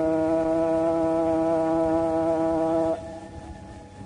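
A male Quran reciter's voice holding one long, steady note at the end of an ornamented phrase of mujawwad recitation. The note cuts off about three seconds in, leaving fainter background sound.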